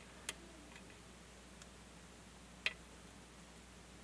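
Two faint metallic ticks from a lock pick working the pin stacks of a cross-key lock held under tension, one just after the start and one about two and a half seconds in, with little else heard between them.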